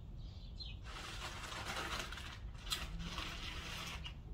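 Rustling and handling noises from plants and material being handled by hand, with one sharp click about two-thirds of the way through.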